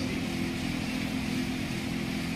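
Steady low hum with an even hiss, a constant background drone with no changes.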